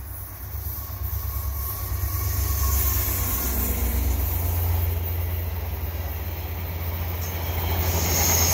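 Via Rail F40PH-2 diesel locomotive passing close by with its EMD 16-cylinder two-stroke engine running, hauling a train of LRC passenger cars that roll past on the rails. It grows louder from about a second in as the locomotive comes alongside, and stays loud while the cars go by.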